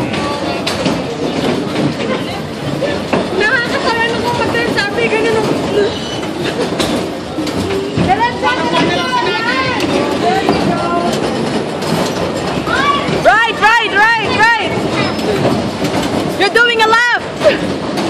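Bumper cars running around a rink, a steady rumbling clatter of the cars' motors and rubber bumpers on the floor. High-pitched runs of laughter from the riders come through about eight seconds in, again around thirteen to fourteen seconds, and near the end.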